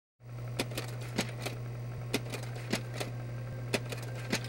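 A steady low hum with scattered, irregular clicks and pops, like the crackle of an old recording.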